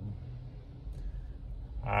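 Low, steady hum with a faint hiss inside a car cabin, with a man's voice starting up near the end.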